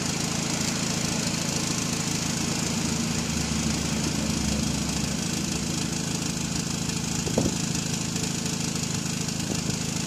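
Saturn Ion's engine idling steadily, heard from inside the cabin, with one short click about seven and a half seconds in.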